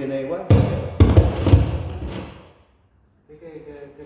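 A run of loud, heavy thumps and knocks from about half a second to two seconds in, with a man's voice before and after them.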